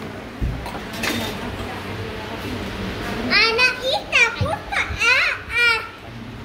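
A young child's high-pitched voice in several short, playful squeals and calls through the second half, over café background noise. A single low knock sounds about half a second in.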